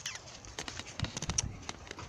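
A few quiet, irregular light taps and clicks with no steady sound behind them.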